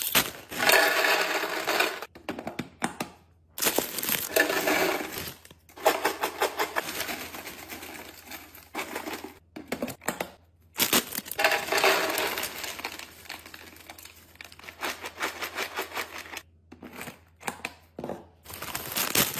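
Foil chip bags crinkling as they are torn open, and chips rattling and clattering as they are tipped into a clear plastic storage canister. The sound comes in about four separate bursts, with the canister's push-button lid pressed shut.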